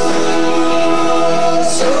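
Live rock band playing a song with sung vocals over guitars and keys, its chord and voices held steady, and a brief hiss of cymbal or sibilance near the end.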